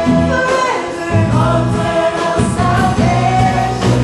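Live gospel praise-and-worship music: a woman sings lead into a microphone over a band with a drum kit and a steady bass line.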